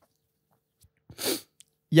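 A single short, sharp breath from a person close to the microphone, about a second in, the rest near silent.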